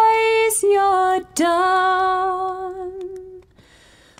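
A woman singing a slow, unaccompanied melody in long held notes. The last note is held for about two seconds, sinking slightly, and fades out near the end.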